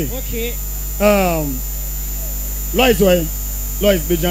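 Steady electrical mains hum runs under a voice calling out over a microphone. There are two long calls, each falling in pitch, and a third starts near the end.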